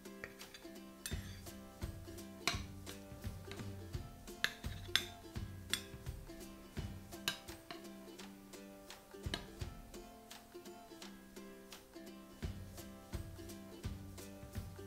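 A metal serving spoon clinking and scraping against a glass baking dish and a ceramic plate as casserole is scooped out, with a few sharp clinks, the loudest around the middle. Soft background music plays throughout.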